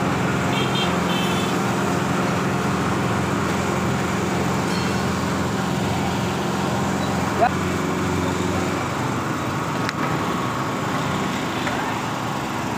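Petrol dispenser pump running with a steady hum while petrol is pumped through the nozzle into a plastic bottle, stopping a little under nine seconds in. A single sharp click comes shortly before it stops.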